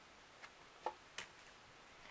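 Near silence with three faint clicks of tarot cards being handled and dealt onto a tabletop, a little under half a second apart.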